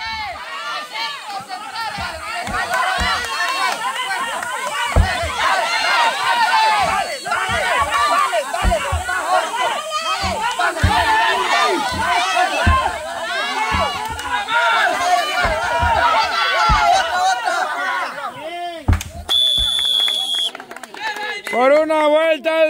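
A group of people shouting and cheering over one another, with scattered dull thumps. Near the end a referee's whistle sounds one steady high blast lasting about a second.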